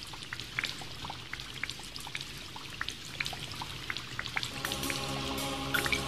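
Start of a song's intro: a rain and water-drop sound effect, scattered drips over a soft hiss and a low hum, with sustained keyboard chords coming in about four and a half seconds in.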